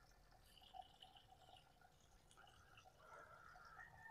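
Near silence: only faint background sound, with a couple of tiny clicks.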